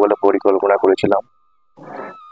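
A man's voice talking in short, animated bursts. It stops a little past one second in, and after a brief pause there is a soft breath.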